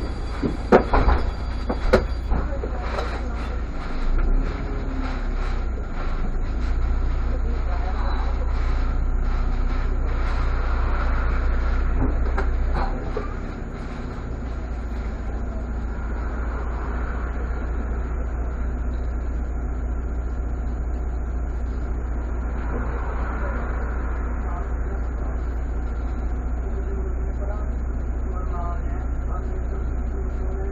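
Irisbus Citelis city bus's natural-gas engine heard from the cab, with a few sharp rattling knocks at the start as it rolls slowly up to a queue of traffic. About 13 seconds in the engine note drops and it settles into a steady low idle while the bus stands still.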